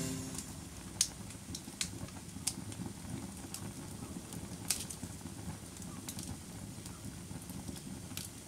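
Wood fire crackling: a soft, steady low rumble with a handful of scattered sharp pops.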